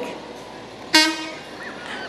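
A vehicle horn gives one short toot about a second in, then fades quickly.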